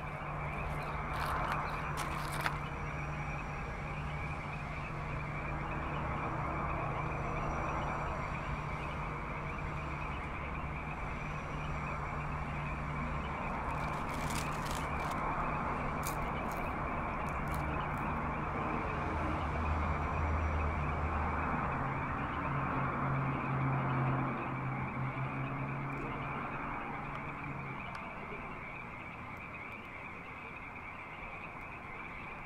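A layered night ambience with a steady high-pitched chorus running throughout and a low steady hum underneath, which shifts in pitch about two-thirds of the way in. Scattered crackles and clicks come near the start and again about halfway.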